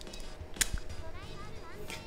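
Two sharp clicks of hard plastic model-kit parts (a Master Grade MS-09 Dom's shoulder armour and arm joint) being handled and pulled apart: one clear click about half a second in and a weaker one near the end.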